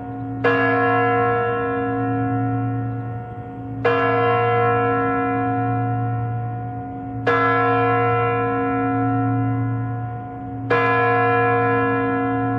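Large bell striking the hour, as at midnight: four slow strokes about three and a half seconds apart, each left to ring on over a steady deep hum.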